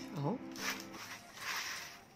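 Handfuls of freshly toasted oat granola rustling and crunching as they are scooped from a baking tray and dropped into a glass jar. There is a short burst about half a second in and a longer one about a second and a half in. The dry, crisp crunch is the sign that the oats are fully toasted.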